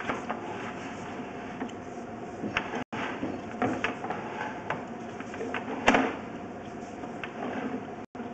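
Sewer inspection camera's push cable being pulled back, with scattered clicks and knocks over a steady faint hiss and hum; the loudest knock comes about six seconds in, and the sound cuts out briefly near three seconds.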